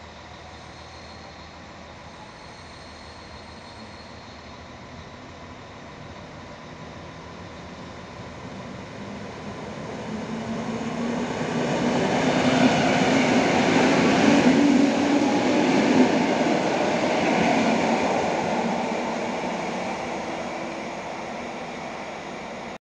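A Polregio EN57AL electric multiple unit passes along the platform. It runs quietly at first and gets steadily louder as it approaches. It is loudest about two-thirds of the way through, with one sharp knock, then fades as it moves away.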